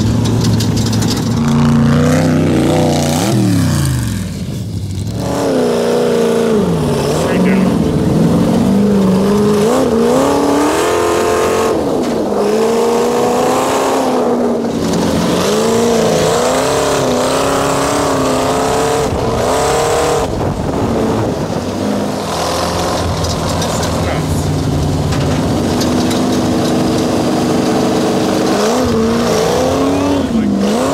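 Supercharged 425-cubic-inch engine of an off-road sand car revving hard under load. Its pitch climbs and falls again and again as the throttle is worked through the dunes.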